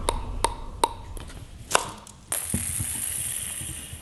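A table tennis ball tapping on a paddle five times in quick, uneven succession, each tap a short pinging click. It is followed about two seconds in by a steady hiss that lasts to the end.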